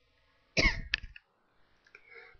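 A person coughing once, briefly, ending in a sharp click.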